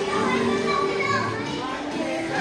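Several people's voices talking excitedly at once over music with held notes.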